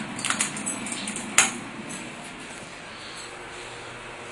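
Elevator car push button pressed with soft clicks, then a single sharp metallic click about a second and a half in, followed by the faint steady hum of the cab.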